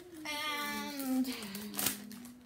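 A dog giving a high, drawn-out whine of about a second, falling slightly in pitch, over a low steady hum, with a single click near the end.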